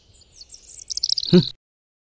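Small birds chirping and trilling in quick high notes that grow busier through the first second and a half. A brief louder call comes near the end, then the sound cuts off suddenly.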